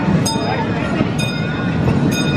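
Small amusement-park train rolling along, with a short metallic click about once a second, among the chatter of a crowd.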